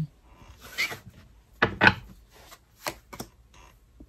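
Tarot cards being handled: the deck picked up and cards slid against each other and onto the cloth-covered table, heard as a few short sliding scrapes, the loudest a double scrape a little under two seconds in.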